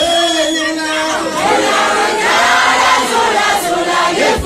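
A crowd of fans singing and chanting together with a male singer on a microphone, many voices on held notes. The group grows fuller about a second and a half in.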